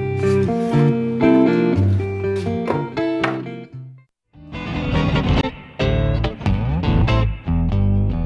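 Plucked guitar music that stops about four seconds in, followed by a brief silence and another guitar tune starting.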